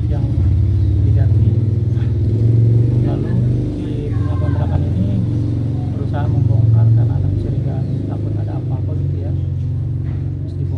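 Steady low rumble of an idling engine, loud and continuous under a man talking.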